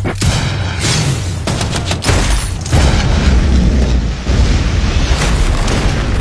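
Film-trailer battle sound: a series of heavy explosion booms and sharp gunshot cracks over a music score, with deep rumble throughout and several hard hits in the first three seconds.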